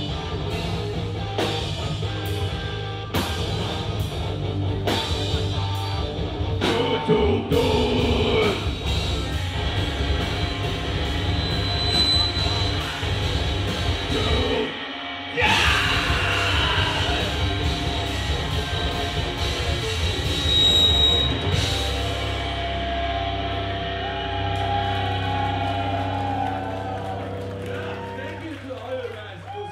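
A live rock band playing loud through a club PA: drums with heavy crash hits roughly every one and a half to two seconds under electric guitars. The playing breaks off for a moment about halfway, comes back in with a hit, and a held chord rings and fades near the end.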